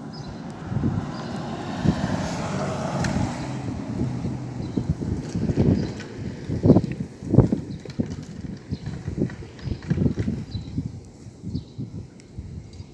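A car drives past close by, its tyre and engine noise swelling over the first few seconds. Irregular low thumps of wind buffeting the microphone follow, strongest about halfway through.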